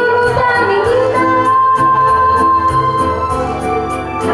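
A woman singing a Spanish-language bolero into a microphone over amplified backing music with a steady beat and bass. A long note is held through the middle.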